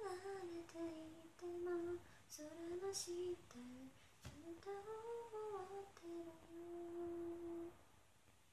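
A woman's voice singing a melody unaccompanied, with a long held note near the end.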